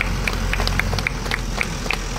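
A few people clapping in sharp, uneven claps, several a second, over the low steady rumble of a truck's engine idling.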